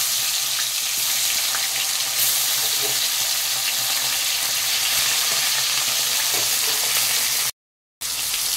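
Hilsa fish heads frying in hot oil in a metal wok: a steady sizzle, with a metal spatula touching the pan now and then. The sound cuts out abruptly for about half a second near the end.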